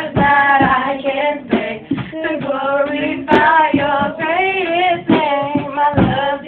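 Girls singing a gospel praise song, the melody gliding between held notes, over a steady beat.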